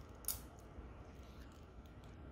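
Stamped stainless steel folding clasp of a watch bracelet being handled and flipped open: one sharp metallic click about a quarter second in, then faint handling over a low hum.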